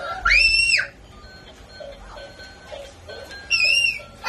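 A toddler's high-pitched squeals, twice, each a short cry that rises and falls, one just after the start and one near the end, over children's music playing from a television.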